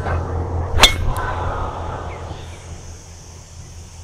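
Golf driver striking a ball off the tee: one sharp crack a little under a second in, followed by a fading hiss.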